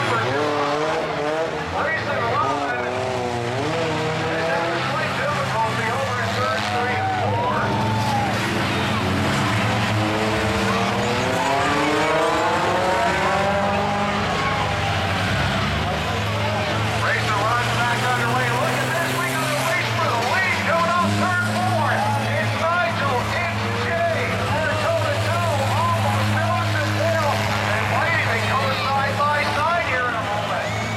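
Race car engines with their rear tyres replaced by steel-plated 'ski' rims, running and revving steadily. One engine revs up and back down again between about ten and sixteen seconds in. Crowd voices chatter throughout.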